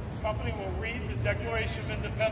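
People talking nearby in an outdoor crowd, over a steady low rumble.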